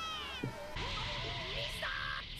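Cartoon voices crying out a long, high-pitched farewell that falls in pitch and breaks off about half a second in, followed by a steady hiss under faint background music.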